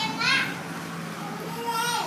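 Young children's high-pitched voices: a short call just after the start and a longer held call near the end.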